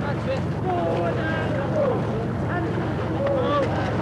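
Many men's voices shouting and calling over one another, none of it clear words, over a steady low rumble.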